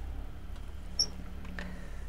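Faint steady low hum of background noise, with a single brief high-pitched squeak about a second in.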